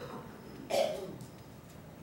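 A single short cough, a little under a second in.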